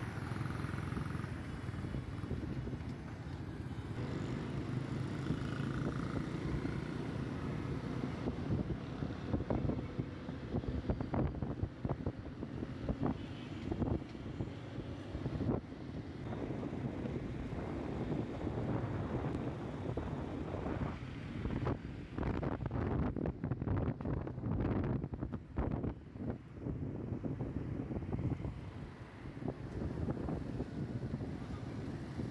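Road traffic heard from a moving vehicle: a steady low engine and tyre rumble, with wind buffeting the microphone in irregular gusts that grow heavier in the second half.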